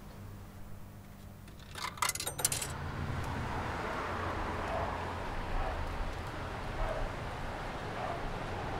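A brief run of light metallic clinks about two seconds in, then a steady rush of traffic on a wet road.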